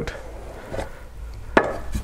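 A small cardboard box being opened by hand: cardboard rubbing and sliding, with one sharp knock about one and a half seconds in.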